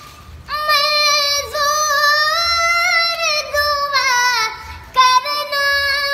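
A young boy singing a song in a high, ornamented voice, holding long notes with wavering runs. He starts about half a second in and takes short breaths between phrases, with a longer pause just before the five-second mark.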